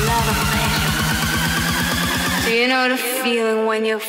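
Electronic dance music build-up: a drum roll speeding up under a rising synth sweep. About two and a half seconds in, the bass and drums cut out, leaving a wavering pitched line.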